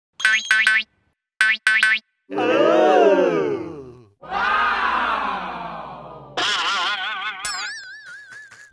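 Cartoon sound effects laid over the picture. Two quick pairs of short musical blips come first, then two long springy boing tones that wobble and slide down in pitch, and a warbling, vibrato tone near the end.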